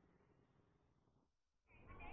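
Near silence: faint low background hiss, with a faint noise rising just at the end.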